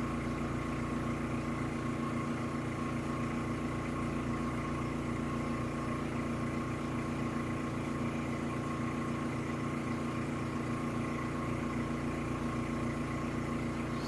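Steady mechanical background hum of room machinery, several steady tones over a low drone with a faint regular low pulsing, unchanging throughout.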